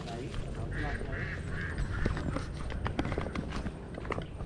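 Footsteps and rustling through grass, with low handling rumble and scattered small clicks, as someone walks carrying the camera.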